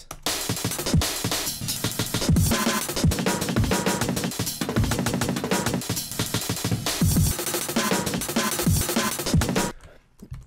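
Chopped drum breakbeats sequenced by a TidalCycles live-coding pattern: eighth-note slices of pre-sliced breaks, picked at random, with the whole chain shifted in time on some cycles so that each break blends into the next. Dense kick and snare hits play, then cut off suddenly shortly before the end.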